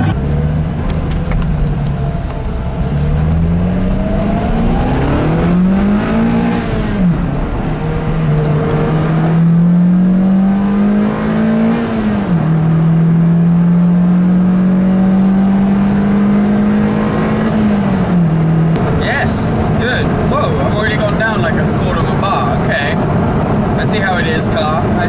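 Lotus Elise Club Racer's four-cylinder engine heard from inside the cabin as the car pulls away and accelerates up through the gears. Its note rises in pitch and falls back at each of three upshifts, then settles into steady cruising road noise near the end.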